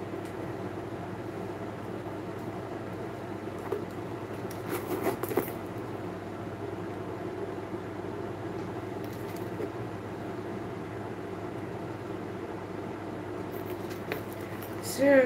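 Steady low background hum with a few brief rustles and clicks about five seconds in as a leather handbag is handled and held up.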